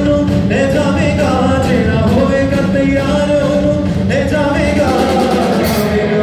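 Live gospel worship band playing at full volume, with electric guitars, keyboard and drums under a male lead singer holding long sung notes.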